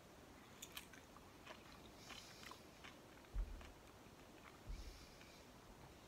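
A person quietly biting and chewing a mouthful of fresh, fairly firm fig, with faint wet mouth clicks and small crunches. Two soft low thumps come about three and a half and five seconds in.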